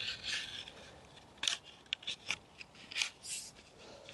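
String being threaded through the holes of trellis netting: a run of short, quiet rustling scrapes as the string and mesh rub together.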